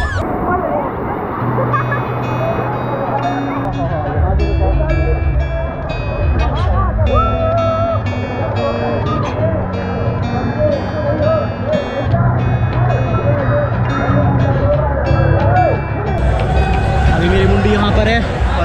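Background music with a rhythmic melody and a steady bass line, over the babble of many voices. The music starts suddenly at the beginning and stops about two seconds before the end.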